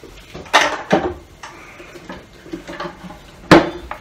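Knocks and clunks of a small wooden treasure chest with metal studs and strapping being picked up and handled: two knocks about half a second and a second in, then a sharper, louder knock shortly before the end.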